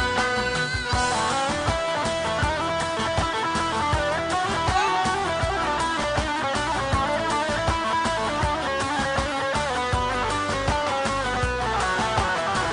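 Live, amplified Kurdish folk dance music from a band: a plucked string melody over a steady drum beat, played instrumentally without singing.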